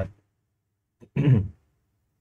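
About a second in, a man makes one short throaty vocal sound, a brief chuckle that falls in pitch.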